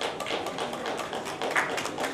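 Scattered hand-clapping from a small group of people: irregular sharp claps, several a second.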